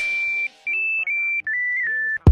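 A run of high, pure electronic beep tones, four notes stepping up and down in pitch with short gaps between them, the last held longest.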